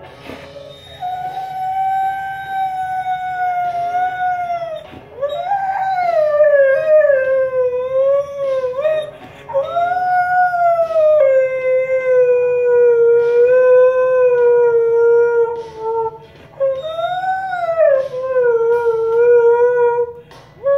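Husky howling along to a song, four long howls with short breaks, each sliding slowly down in pitch.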